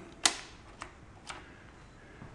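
Clicks of a toggle switch on an engine test stand's control panel being flicked by hand: one sharp click about a quarter second in, then two fainter clicks about half a second apart.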